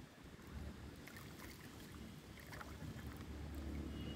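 Water sloshing in a plastic tub as hands work in it, rinsing a small potted water lily, with a few light splashes.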